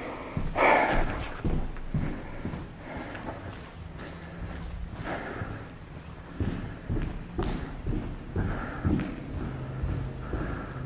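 Footsteps on a bare concrete floor with scattered thuds and knocks, the loudest clatter about a second in.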